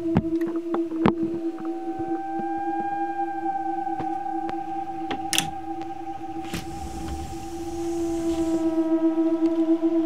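Steady droning tones with a higher tone that slowly rises and falls above them, and a few sharp clicks, most of them in the first second.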